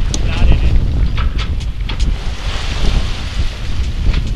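Strong wind buffeting the microphone on a small sailboat under sail, a constant deep rumble, with water washing against the hull and a louder hiss of spray about two and a half seconds in.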